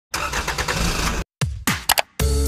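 Electronic intro sound effects: about a second of dense, noisy sound with a rough pulsing texture, which cuts off into a brief silence. Then come a few falling sweeps and sharp clicks.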